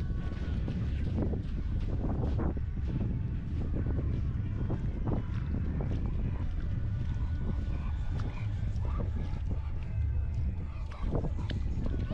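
Wind rumbling on the microphone throughout, with scattered soft steps and splashes through wet sand and shallow water.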